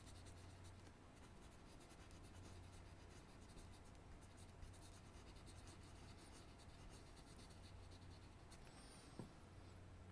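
Faint scratching of a pencil on paper as small pattern strokes are drawn, over a steady low hum.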